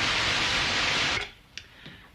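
White noise from a Moog synthesiser's noise source: a steady, even hiss that sounds like surf or steam. It cuts off suddenly a little over a second in.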